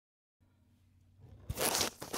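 Handling noise as the camera is picked up and moved: silence at first, then faint rustling, a sharp click about one and a half seconds in and a short loud scraping rush.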